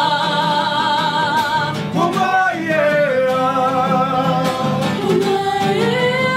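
Voices singing a song over strummed guitar, holding long notes with vibrato.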